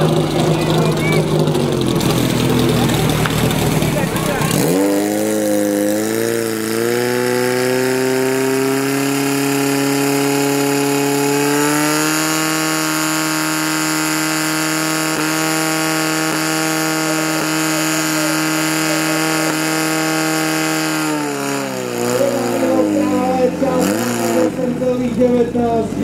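Portable fire pump engine revving up, then held at steady high revs as it pumps water to the nozzles, then dropping back near the end. Crowd noise in the first few seconds and again after the engine drops.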